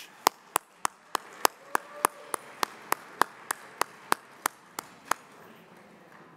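One person clapping his hands close to a lectern microphone, a steady run of about eighteen crisp claps at about three and a half a second that stops about five seconds in.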